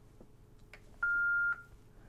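Yaesu FTM-500D mobile transceiver giving one steady, high beep about half a second long as OK is confirmed and it starts saving its backup to the SD card. A couple of faint button clicks come before it.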